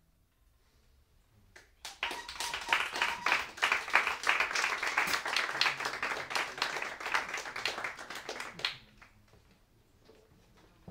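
Audience applause: many hands clapping, starting abruptly about two seconds in and dying away about a second before the end.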